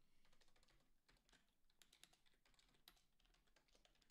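Faint computer keyboard typing: a quick, uneven run of soft key clicks.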